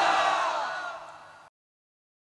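The echo of a man's voice through a public-address system and the venue's background noise, fading steadily out to complete silence about one and a half seconds in.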